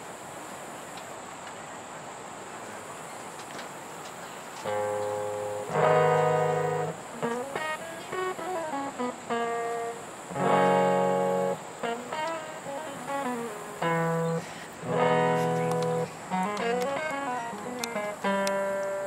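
An acoustic guitar solo. It begins after about five seconds of steady open-air hush, with strummed chords that ring out and quick runs of single notes between them.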